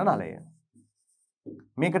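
A man's voice saying the word for 'pipe', then a marker pen faintly scratching on a whiteboard as he writes. He starts speaking again near the end.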